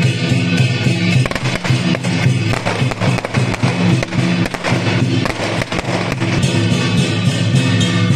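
A string of firecrackers crackling in a rapid run of sharp pops from about one second in until about six seconds, over loud music.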